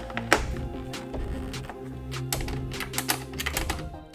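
Background music of sustained tones, with sharp clicks: one strong click just after the start and a quick run of clicks in the second half.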